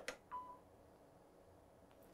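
A soft click, then a short single beep about a third of a second in, from the ultrasound system's control panel as images are acquired; the rest is near silence.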